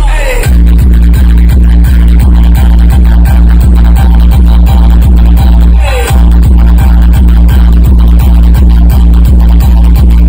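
Very loud electronic dance music from a DJ speaker-wall sound system, dominated by heavy bass with a fast, even beat of about four pulses a second. About six seconds in, a falling swoop and a momentary break come before the beat resumes.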